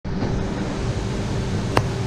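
Steady low hum with a faint steady tone running through it, and a single sharp click near the end.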